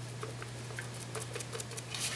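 Damp sponge dabbing acrylic paint onto a hollow plastic bunny candy dispenser: faint, irregular soft taps and small clicks, over a steady low hum.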